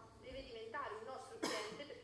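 A woman's voice speaking in short phrases, with a single cough about one and a half seconds in.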